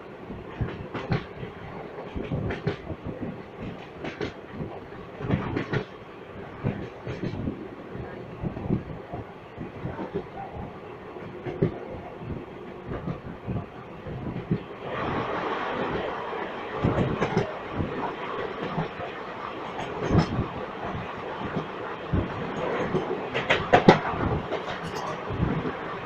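Moving Indian Railways express train heard from an open coach door: a steady rumble of the coaches with the wheels clicking irregularly over rail joints. About fifteen seconds in the noise grows louder and fuller, and near the end a train passes on the next track.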